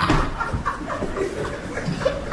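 Quiet chuckling and laughter from the comedian and a small audience in a hall, in a lull between jokes.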